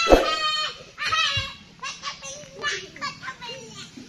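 Children's high voices calling and shouting at play, on and off throughout, with a low thump just after the start.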